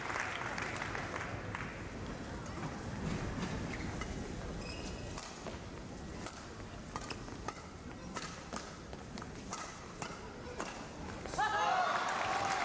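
Crowd applause dying away, then a badminton rally: a series of sharp racket strikes on the shuttlecock, irregularly spaced, over a murmuring crowd. The crowd's noise rises sharply near the end as the point is won.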